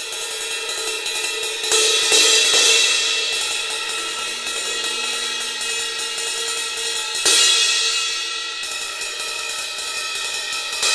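Sabian cymbals played with a drumstick: a run of quick, light strokes keeps them ringing with many overlapping tones. Two louder hits, about two seconds in and again about seven seconds in, swell the ring, which then slowly fades.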